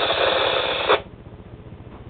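Static hiss from a two-way FM radio's speaker between transmissions, cutting off sharply about a second in as the receiver's squelch closes. A faint low background hum remains afterwards.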